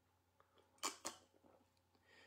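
A man drinking from a mug: two brief soft sounds of sipping and swallowing about a second in, otherwise near silence.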